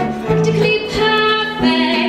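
Musical-theatre song: a woman singing with held, wavering notes over instrumental accompaniment with a light, steady beat.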